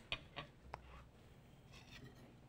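Faint scrapes and a few light clicks of a serving spoon against a plate in the first second, then near silence with room tone.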